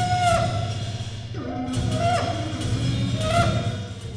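Trombone playing long held notes that slide in pitch at their ends, over a low steady drone, with several sharp percussive strikes scattered through the passage.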